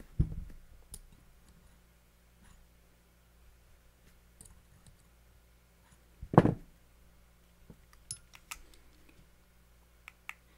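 Hands handling a vape mod and a metal coil tool: scattered small clicks and taps as the tool works the coils on the rebuildable atomizer deck, with a dull handling thump just after the start and a louder one about six seconds in.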